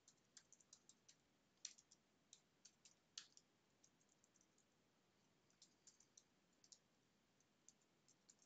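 Faint, irregular keystrokes on a computer keyboard as code is typed and edited, single taps with a short lull about halfway through.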